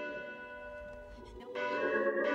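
Slow bell tones: one ringing and dying away, then a fresh strike about one and a half seconds in.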